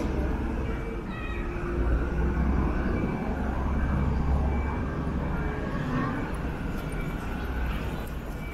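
City street ambience at a busy crossing: a steady low traffic rumble, strongest in the middle few seconds, with the murmur of passing pedestrians.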